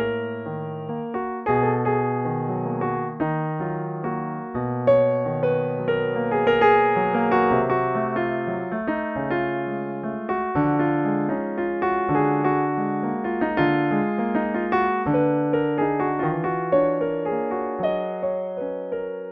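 Solo piano playing an improvised piece at an unhurried pace, with held bass notes under changing chords and a melody line above.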